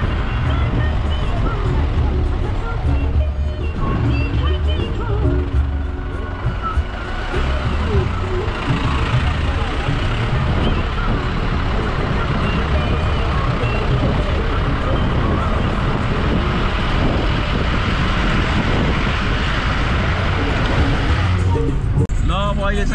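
A road vehicle's engine and road rumble heard from on board, steady and loud, with indistinct voices mixed in.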